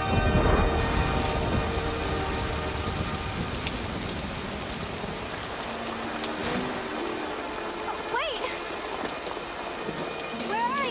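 Steady heavy rain pouring down, with a loud low rumble of thunder in the first second. A short pitched cry is heard about eight seconds in.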